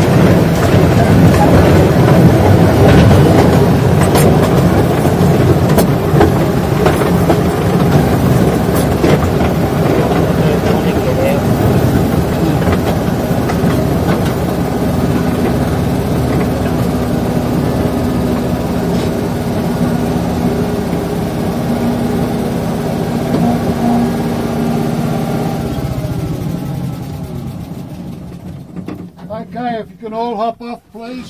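Small tourist train running along the track, with a low engine rumble and wheels clicking over the rails, then slowing and dying away near the end as it comes to a stop.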